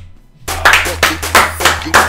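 Two people clapping their hands in a quick, steady rhythm of about three claps a second, starting about half a second in, with music and a steady low bass underneath.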